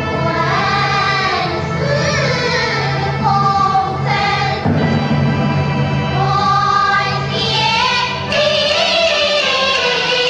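Female singing in Yueju (Shaoxing) opera style: long, sliding vocal phrases over traditional Chinese instrumental accompaniment, whose low sustained notes drop out near the end.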